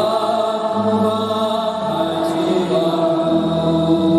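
Sustained organ-style chords held steadily and changing about every second or so: the instrumental accompaniment of a sung responsorial psalm, heard while the cantor is silent.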